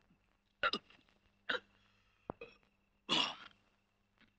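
A man hiccuping a few times, short sharp gulps about a second apart, with a single click among them and a longer, noisier burst near the end.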